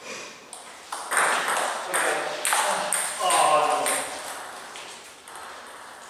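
Table tennis ball striking bats and the table: a series of sharp, irregular ticks, each with a short ring. A voice is heard briefly in the middle.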